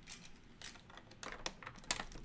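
LEGO bricks being handled: light plastic clicks and clatter as pieces are picked over and pressed together, the clicks coming quicker near the end.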